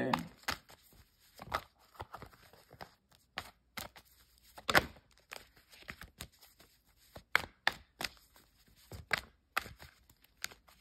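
Tarot cards being handled: a run of irregular light clicks and taps as the deck is worked through and cards are drawn, the sharpest about halfway through.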